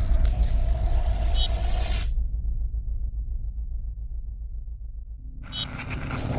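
Logo sting sound effect: a deep rumble under a bright shimmer that cuts off suddenly about two seconds in. The rumble then fades and swells again near the end with a low held tone.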